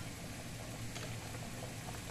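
Spaghetti boiling hard in a stainless steel pot: a steady bubbling hiss with a low hum underneath.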